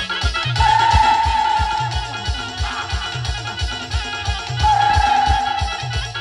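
Live band music from a village band party: a steady, fast bass drum beat under a lead melody that holds long high notes twice, once about half a second in and again near the end.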